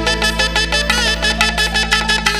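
Instrumental interlude of an Indian film song: a wind instrument plays an ornamented, wavering melody over sustained bass notes and a quick, even percussion beat.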